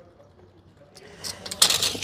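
Steel tape measure blade retracting into its case, a short scratchy rattle about a second and a half in, after a quiet first second.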